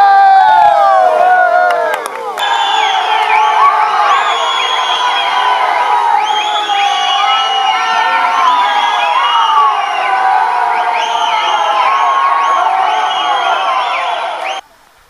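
A crowd shouting and cheering, many voices whooping and calling over one another, with a brief dip about two seconds in.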